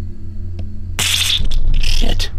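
Two short bursts of scraping noise, one about a second in and one at the end, over a steady low hum.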